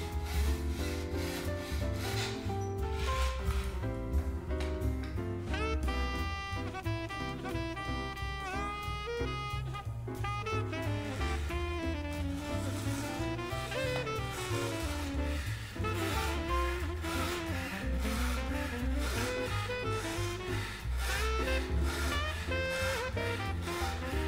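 Instrumental background music plays throughout. Under it are the repeated back-and-forth rasping strokes of a marquetry fret saw on a chevalet, cutting through a packet of dyed sycamore veneer.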